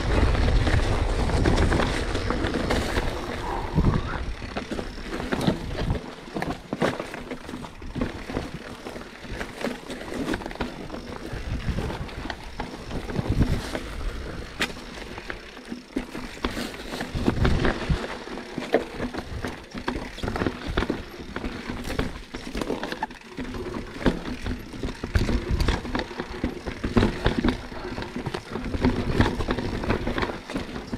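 Santa Cruz Bronson enduro mountain bike descending a rocky dirt trail: tyres crunching over loose stones, with frequent sharp knocks and rattles from the bike as it hits rocks. A heavier low rumble dominates the first few seconds.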